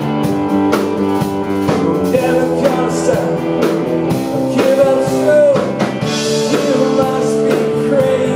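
Live rock band playing a passage between sung lines: a drum kit keeping a steady beat under guitar and held chords.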